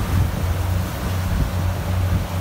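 Engine of a wooden abra water taxi running at a steady low hum, with wind rushing over the microphone.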